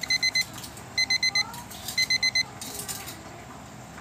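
Electronic alarm beeping in three quick groups of four short, high beeps, about one group a second.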